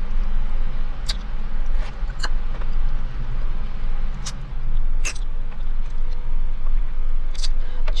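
Steady low hum of a car idling, heard from inside the cabin, with a scattering of short sharp clicks and crackles from handling a sandwich and its cardboard box while chewing.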